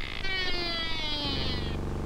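Comic sound effect of car tyres screeching as the sports-car sleeping bag corners: a high squeal sliding slowly downward in pitch for about a second and a half, with a low steady drone joining about halfway through.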